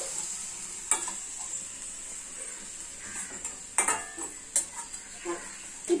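Chopped carrots and beans with masala sizzling in oil in a stainless steel kadai while a steel spatula stirs them. The spatula scrapes and taps sharply against the pan about a second in and twice more past the halfway point.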